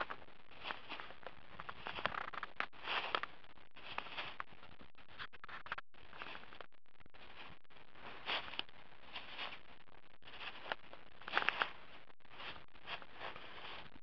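Footsteps of a person walking through tall dry grass and fallen leaves, each step a rustling crunch, about one a second.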